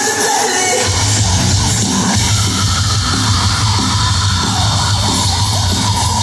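Live rock band playing loud through an arena PA, heard from within the crowd. A lighter passage of held melodic lines gives way, about a second in, to the full band with heavy bass and drums.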